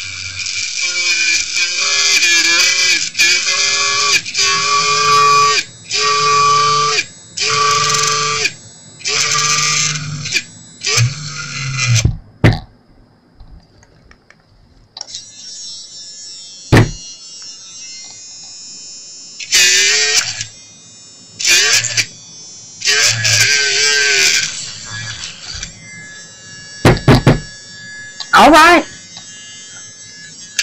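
Small handheld electric rotary drill whining in short bursts, about one a second, as its bit bores a drain hole through a cast resin dish. After a brief lull around the middle, a few more separate bursts come in the second half.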